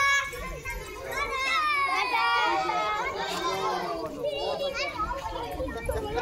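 A crowd of schoolchildren shouting and chattering together, many high voices overlapping, loudest from about a second in.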